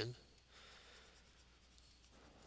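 Faint scratching of a stylus on a drawing tablet as a mark is drawn, starting about half a second in.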